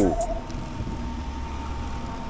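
An E-Ride Pro SS electric dirt bike coasting off the throttle and slowing under regenerative braking. Wind on the microphone and tyre rumble dominate, with a faint steady whine from the motor.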